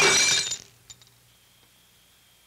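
A loud, sudden crash lasting about half a second, followed about a second in by a few small, light clinks.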